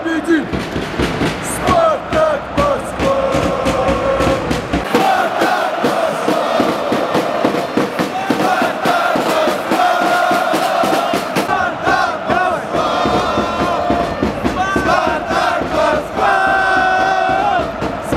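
Football crowd chanting a song in unison, many voices holding long sung notes, with sharp beats running under it.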